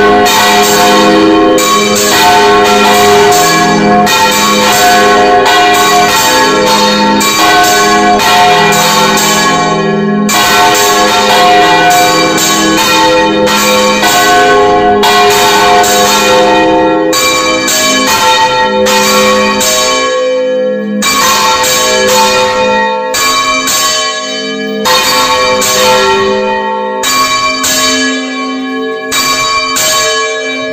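Church bells swung full circle in the Valencian volteig style, heard up close in the belfry: a bronze bell on a counterweighted headstock turns right over while its clapper strikes again and again, ringing together with other bells in a dense, loud peal. In the last third the strikes thin out, with short gaps between them.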